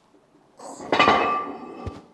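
A sudden sharp metallic clank from the steel cylinder-and-piston press tool, ringing for about a second as it fades, with a short dull thump near the end.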